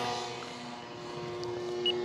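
Electric motor and propeller of a 1.4 m FMS J-3 Cub RC plane in flight, a steady droning hum at one pitch. It dips in loudness about a second in and grows louder again toward the end.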